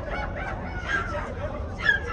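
Players' voices calling and shouting across the field, with one loud shout near the end that falls in pitch.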